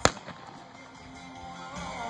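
A single sharp gunshot right at the start, from a galloping rider shooting at balloon targets set on cones. Faint music plays behind it.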